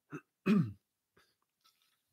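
A man clearing his throat once, a short voiced sound that falls in pitch about half a second in. After it come only faint small ticks as he handles an insulated water bottle and raises it to drink.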